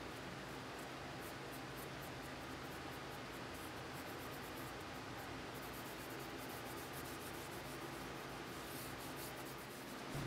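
Faint scratchy rubbing of a dye dauber being wiped and dabbed over a vegetable-tanned leather sheath, repeated throughout, over a steady low hum.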